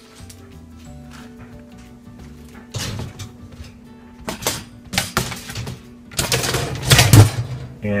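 Wire dishwasher rack rattling and clattering as it is slid back in on its rails, in several short bursts with the loudest near the end, over background music.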